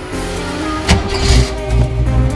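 The Mustang's engine fires up with a sudden sharp burst about a second in, then runs with a low drone as the new driveshaft starts turning, under background music.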